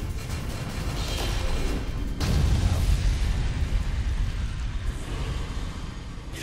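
Bass-heavy trailer music and sound design: a noisy swell builds, then a deep boom hits about two seconds in and its low rumble carries on.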